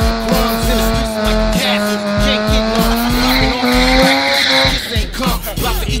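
Mazda RX-8's two-rotor rotary engine held at high revs during a burnout, with tyre squeal; its pitch creeps up, then it cuts off about five seconds in. A hip-hop track with a steady beat plays over it.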